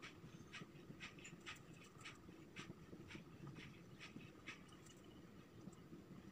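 Faint squeaks and scratches of a marker pen writing on a whiteboard, in short strokes about two a second.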